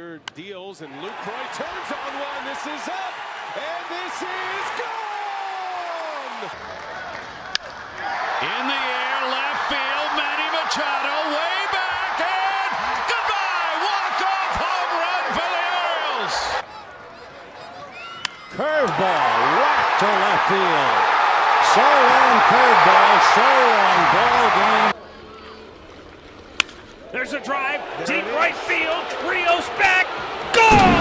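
Baseball stadium crowd cheering loudly after game-winning home runs, in several short clips cut together that start and stop abruptly, with many shouts and whoops among the noise. A few sharp knocks near the end.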